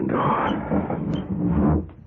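Radio-drama sound effect of a window being slid open: a noisy scrape lasting nearly two seconds.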